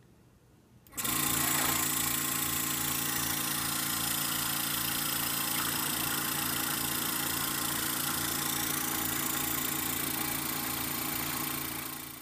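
Portable medical suction machine (aspirator) switched on about a second in and running steadily: an even motor hum under a hiss. It fades away near the end.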